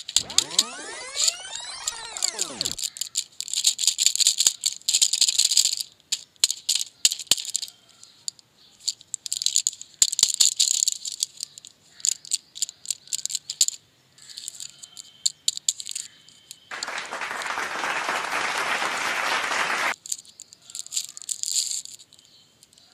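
Packaging being handled and opened: crinkling and clicking of a cardboard lozenge box, a foil blister pack and a plastic lollipop wrapper. The first few seconds carry a tone that glides down in pitch, and near the end a steady hiss lasts about three seconds.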